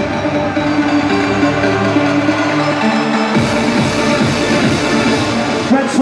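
Loud electronic dance music from a live DJ set over the stage sound system, with sustained synth notes. About halfway through, deep bass and a brighter, fuller layer come in.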